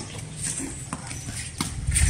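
Tennis ball being struck by rackets and bouncing on a hard court: several short knocks in quick succession.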